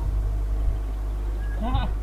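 A steady low rumble with people talking faintly in the background, and a brief voice near the end.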